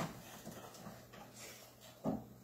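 A short click, then faint scattered soft knocks and rustles of someone settling at a piano and handling things at it, over a low steady room hum.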